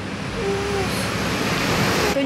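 Rushing vehicle noise that grows louder over the two seconds and cuts off abruptly at the end.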